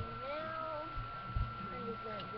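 A cat meowing: one drawn-out meow that rises and then falls in pitch, followed by a couple of shorter rising calls near the end. A couple of low thumps come from handling close to the microphone.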